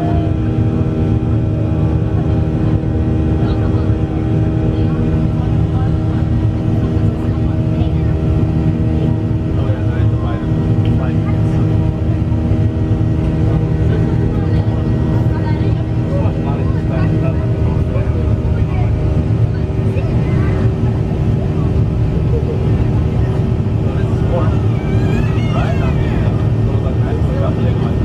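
Cabin noise of a Boeing 737-800 climbing after takeoff: its CFM56 turbofan engines drone steadily with several steady tones over a deep hum. Faint passenger voices rise over it in the second half.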